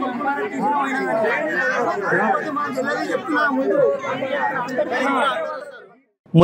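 Several voices talking at the same time, overlapping chatter that fades out near the end.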